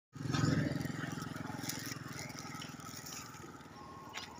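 Motorcycle engine running with an even pulsing note, loudest at the start and fading steadily over the few seconds.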